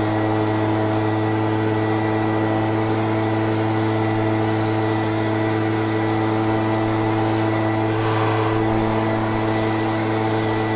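Wild Badger backpack leaf blower's two-stroke engine running steadily at a constant pitch while blowing leaves.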